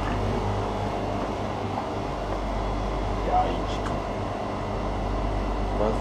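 Grocery store room tone: a steady low hum from refrigerated display cases and ventilation, with faint voices in the background.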